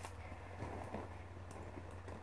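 Faint handling noise of a bag strap being adjusted, a few light ticks and rustles, over a low steady room hum.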